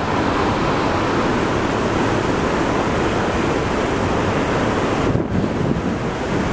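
Steady rushing of water and wind from the stern of a moving ferry: the churning wake mixed with wind buffeting the microphone. The noise thins briefly about five seconds in.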